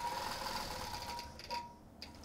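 Computer-guided long-arm quilting machine running as it stitches a pantograph pattern through the quilt layers, a steady machine hum with a thin high whine, easing off about a second and a half in.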